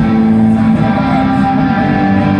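Live rock band playing loud, with electric and acoustic guitars strumming over the rest of the band.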